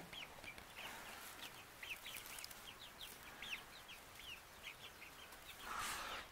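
A flock of young chickens peeping: many short, high chirps scattered steadily and overlapping, faint.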